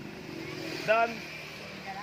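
A motorcycle engine passing on the road, a low steady drone, under a man's voice saying a single word about a second in.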